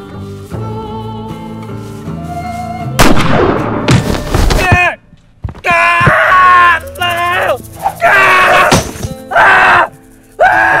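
Dramatic film score, then a sudden loud impact about three seconds in, followed by a man's loud, pained groans and cries.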